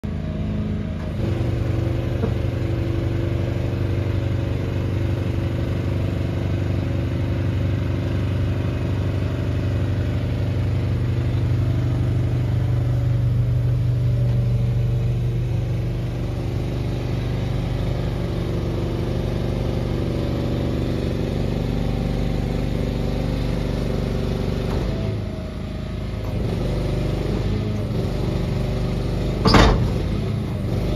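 An engine running steadily with a low hum while the shed-carrying trailer is moved on its sideways wheels; the hum eases briefly about five seconds before the end. A single sharp knock, the loudest sound, comes just before the end.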